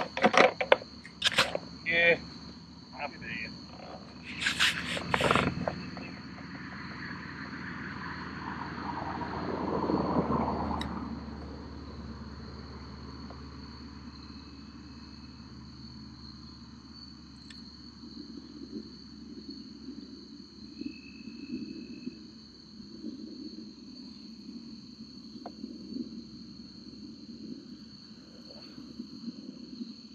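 Crickets chirring in a steady high drone. A few sharp clicks and knocks fall in the first few seconds, and a broad rushing sound swells to its loudest about ten seconds in, then fades away.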